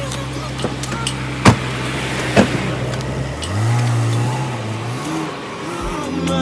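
Chevrolet Camaro engine idling with a steady low hum and two sharp knocks. About three and a half seconds in it revs up, its pitch rising and wavering for a second or so before easing back.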